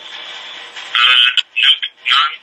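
Low line hiss, then about a second in a person's voice comes in loud short bursts, thin as if over a phone line.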